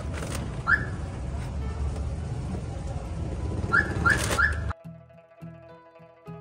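Steady low rumble of traffic and engines in a car park, with four short high squeaks, one early and three in quick succession about four seconds in. It then cuts abruptly to soft plucked-string background music.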